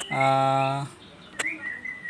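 A man's drawn-out hesitation sound, held on one steady pitch for under a second. A single sharp click comes about one and a half seconds in, and small birds chirp faintly in the background.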